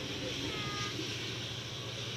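Passenger train rolling past, a steady rumble of the coaches on the rails.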